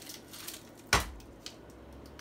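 Steel-and-plastic folding hand truck being folded up: one sharp clack about a second in, with a couple of lighter clicks around it, as the toe plate is swung up.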